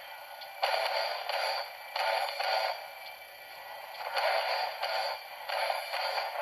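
Soundtrack of an action film clip playing on a television, a series of loud swells and hits with quieter gaps between them, heard thin and tinny through the TV's small speaker.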